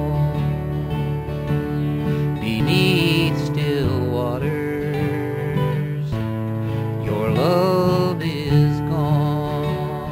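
Country music instrumental break: acoustic guitar accompaniment with a lead line of sliding, gliding notes.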